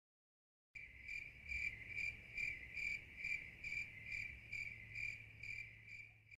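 Cricket chirping sound effect, a steady, even run of about two chirps a second that starts just under a second in out of dead silence. It is the cartoon cue for an awkward silence.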